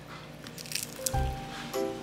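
A spoon scooping into a bowl of soft tofu and vegetables, a brief squelch and scrape in the first second. About a second in, background music with plucked notes over a bass comes in.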